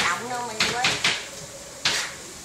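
A voice talking for about the first second, with three sharp knocks, the loudest near the end.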